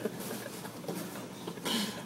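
A short laugh, then low background noise with a brief high hiss near the end.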